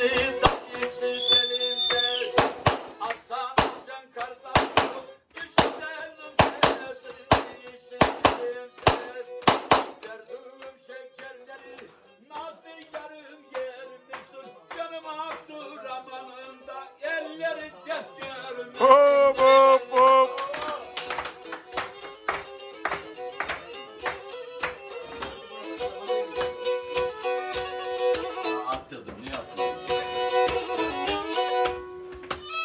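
Black Sea kemençe playing a folk tune, with sharp rhythmic claps about twice a second through the first ten seconds. About two-thirds of the way in, a man's voice rings out briefly over the playing.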